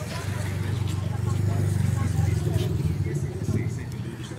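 A motorcycle engine running as it passes close by on the street, growing louder through the first couple of seconds and then easing off, with faint voices of people on the street behind it.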